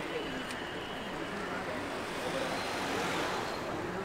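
Road traffic noise from passing cars, a steady hum that swells as a vehicle goes by about three seconds in.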